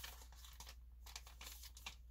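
Single-serving shake sample packets crinkling faintly as they are handled, a string of short crackles.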